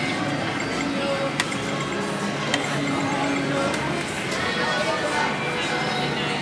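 Casino floor ambience: background music and a murmur of voices. Two sharp clicks, a little over a second apart, come from the video poker machine's buttons as a new hand is dealt.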